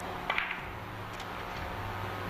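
Carom billiard balls clicking during a three-cushion shot: a sharp click about a third of a second in and a fainter one about a second later, over a low steady hum.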